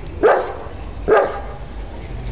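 A dog barking twice, short single barks about a second apart.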